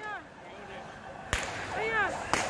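One sharp, loud bang from a riot police tear gas launcher firing, a little past halfway, amid brief shouts from people in the street.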